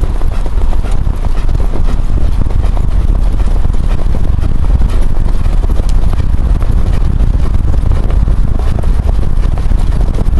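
Hoofbeats of harness-racing horses pulling sulkies at speed, a rapid clatter of many hooves over a loud, steady low rumble from the moving start car.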